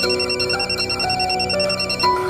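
Mobile phone ringing with an electronic ringtone, a fast high trill, over soft background music.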